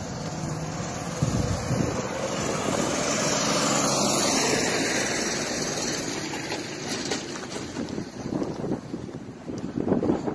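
A car passing on the street, its noise swelling to a peak about four seconds in and then fading away.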